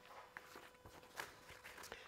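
Near silence: room tone with a few faint, short clicks spread through it.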